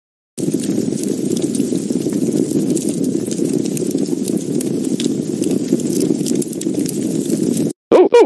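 Cartoon fire sound effect: a steady, dense rumble with faint crackles. It starts about half a second in and cuts off suddenly near the end, matching a rage-fire animation.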